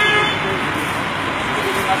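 Busy urban traffic noise with a short vehicle horn toot at the very start, and people talking in the background.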